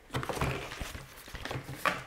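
Cardboard presentation box being handled and opened: scattered soft scrapes, rustles and small taps of card.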